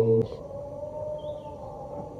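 A low chanting voice breaks off just after the start, followed by a single faint click and then a quiet steady hum with a brief faint high chirp.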